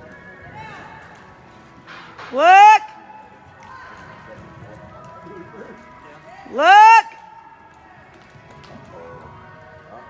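Two loud whoops from a person, each rising in pitch over about half a second and about four seconds apart, cheering a barrel horse on through its run, over a low background of arena noise.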